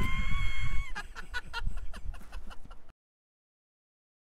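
An elderly man laughing: one long, high drawn-out note, then a quick run of cackling bursts. The sound cuts off abruptly about three seconds in.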